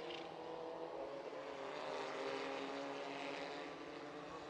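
Single-seater race car engine running at speed on track, a steady drone.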